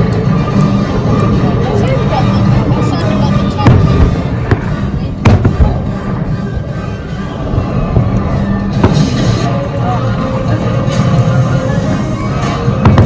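Fireworks going off, with a few sharp bangs about four to five seconds in and more near the end, over loud music with a voice in it.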